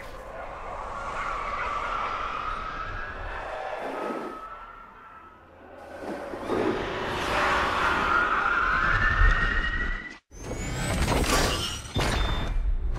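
Car engine sound effects revving up, the pitch rising twice, over a rushing noise; the sound cuts out suddenly near the ten-second mark and comes back loud.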